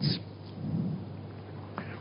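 Wind rumbling on the microphone with a steady outdoor hiss, swelling a little about half a second in.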